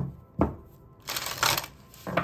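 A deck of oracle cards shuffled by hand: two sharp card slaps, then a longer rustling riffle about a second in.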